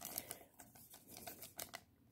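Faint, scattered crinkles and clicks of a thin clear plastic card sleeve being handled as a baseball card is slid into it.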